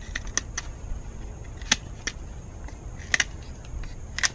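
A Pohl Force Mike One folding knife shaving a wooden stick: a scattering of short, sharp cuts and scrapes at irregular intervals, about seven in all, with a close pair a little after three seconds.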